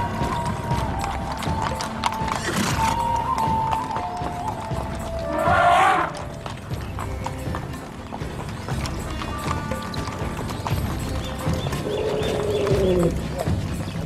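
Horses' hooves clip-clopping on stone paving as a mounted column rides at a walk, under a soundtrack of music. A loud animal call rises out of the mix about six seconds in.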